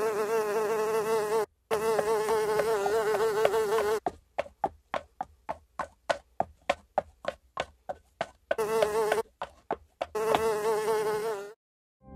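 Housefly buzzing, a wavering hum that first runs steadily with one short break. It then stutters into short buzzes about four a second and returns to two steady buzzes, stopping just before the end.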